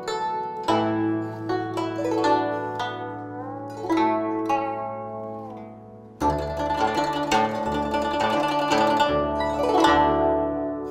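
Guzheng (Chinese plucked zither) played solo: a run of plucked notes that ring on and overlap, with some notes bent in pitch by pressing the strings. About six seconds in, a louder flurry of plucks comes in over sustained low bass strings.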